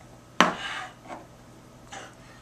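A shot glass knocked down hard on a wooden counter: one sharp knock about half a second in, then two fainter knocks as glasses are handled.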